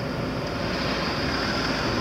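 Steady road and engine noise of a car, heard from inside the cabin as it drives along a street.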